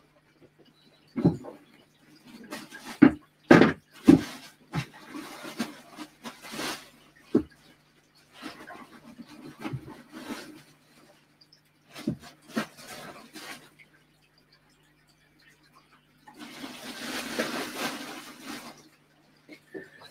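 Scattered knocks and clatter of objects being handled, then a steady hiss lasting about two and a half seconds near the end, over a faint low steady hum.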